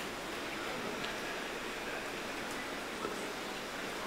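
Steady, even hiss of background noise, with no distinct event or pitched sound in it.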